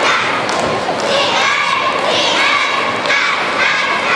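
Youth cheerleading squad shouting a cheer in unison, in short chanted phrases about a second apart, punctuated by sharp thumps.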